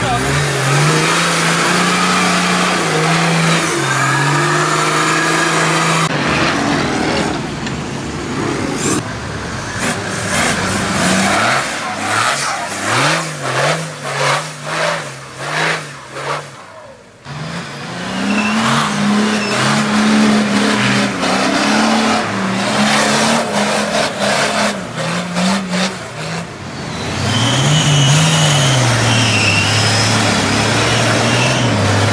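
Off-road 4x4 engines revving hard under load in deep mud, the pitch rising and falling again and again as the drivers work the throttle. Through the middle there is a stretch of rapid irregular knocking and spattering as spinning tyres fling mud.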